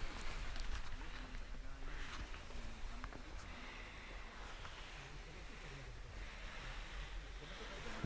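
Faint rustling and handling noise from a handheld camera being moved around, with a few light clicks.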